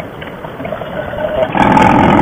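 Motorcycle riding noise: the V-twin engine of a 2005 Harley-Davidson Softail Fat Boy under way with wind rushing past. It grows louder about a second and a half in.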